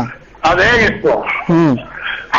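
Speech: a voice in short, halting utterances, two of them about a second apart.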